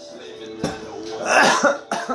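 A man coughing, with the loudest cough a little past the middle, over background music.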